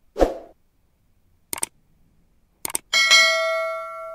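Subscribe-button animation sound effects: a short swish, a double click, another double click, then a bell-like ding that rings out and fades.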